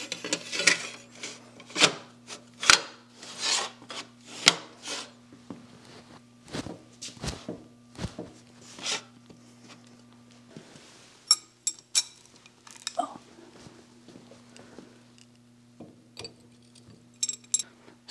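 Sheet-metal chip shield scraping and sliding over the cast-iron saddle of a milling machine as it is fitted by hand, with metal-on-metal clinks and knocks. Dense scraping in the first few seconds, then scattered knocks and taps.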